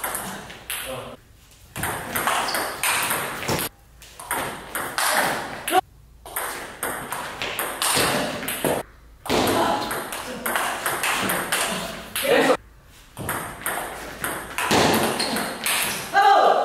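Table tennis rallies: the ball clicking back and forth off the bats and the table. There are several points, with brief quiet gaps between them.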